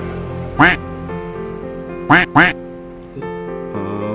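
Background music with steady held notes, over which come three loud duck quacks: one about half a second in, then two in quick succession about two seconds in.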